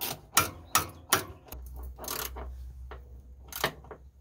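Irregular metallic clicks and knocks of a steel bracket and its bolt being handled and fitted by hand among engine-bay parts, about half a dozen in all, with a low steady rumble in the background through the middle.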